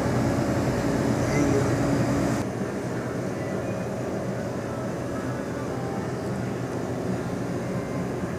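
Shop room sound: a steady low mechanical hum under indistinct background voices. The whole sound drops abruptly in level about two and a half seconds in.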